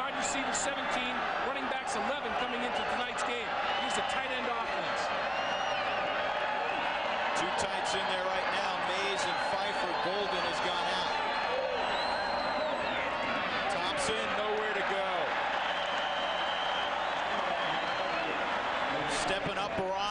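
Large stadium crowd noise: many voices yelling and cheering together, steady throughout and a little fuller in the middle.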